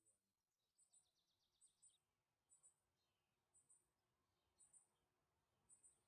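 Near silence broken by faint, very high chirps in quick pairs, about one pair a second, with a short rapid trill from about half a second to two seconds in.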